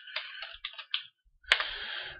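Typing on a computer keyboard: a quick run of keystrokes in the first second, then one sharper keystroke about one and a half seconds in, followed by a short hiss.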